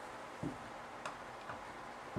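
Quiet room with three faint, short ticks of a marker tip on a whiteboard during writing.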